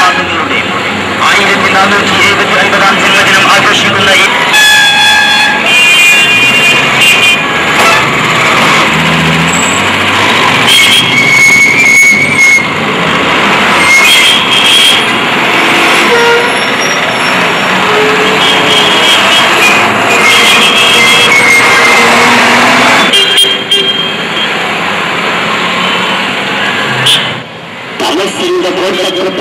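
Road traffic with vehicle horns sounding several times over a steady rumble of passing vehicles, mixed with voices.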